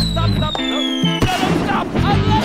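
Cartoon sound effect over background music: a whistle falls steadily in pitch for about a second and a half, then a sudden burst like a firework comes about a second in.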